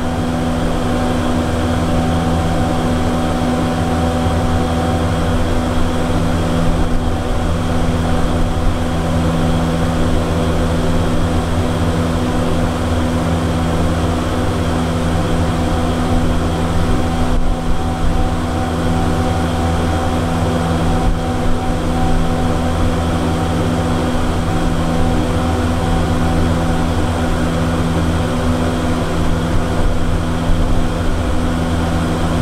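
1957 Schlieren single-speed traction elevator travelling in its shaft, heard from inside the cab: a steady, loud machine hum with several held tones over a low rumble.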